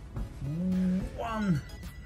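A man's wordless vocal sounds: one drawn-out sound that holds its pitch and then falls away about a second and a half in, and another that begins near the end.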